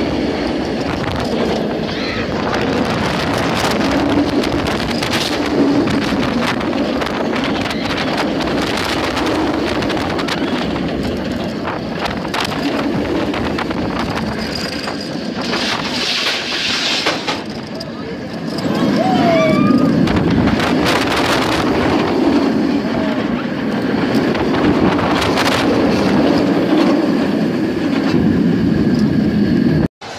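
Roller coaster ride heard from a rider's seat: a continuous loud rush of track rumble and wind buffeting the microphone. Riders' voices and yells break through, briefly dropping back about two-thirds of the way in and then louder again.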